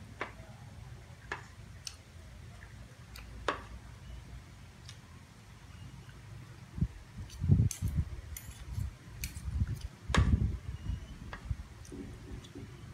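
Metal spoon and fork clicking lightly against a plate while someone eats rice, a few separate clinks. In the second half come dull low thumps and rustling, the loudest sounds.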